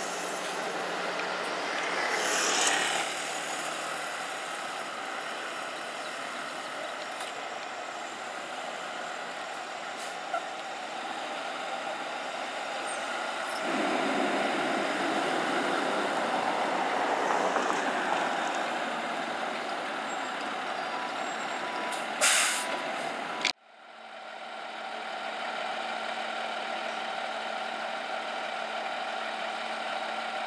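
Fire engine's diesel engine running in city traffic, growing louder as the truck pulls past about halfway through, with a short sharp air-brake hiss about two-thirds of the way in. After a sudden cut, a diesel engine idles steadily with a low hum.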